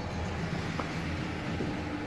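Steady low background rumble with a faint hum joining about a second in; no distinct event.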